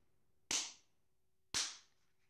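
Two sharp snapping sounds about a second apart, each dying away quickly.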